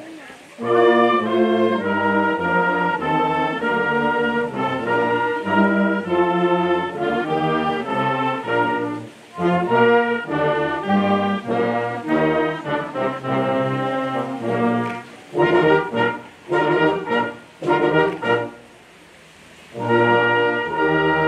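Youth wind band playing, with brass and saxophones sounding full chords. Near the end the band plays several short, detached chords, then a brief rest before the next entry.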